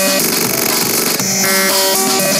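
An electronic music track with synthesizer chords and a bright high layer, played back from an FL Studio project. The synth chord changes twice.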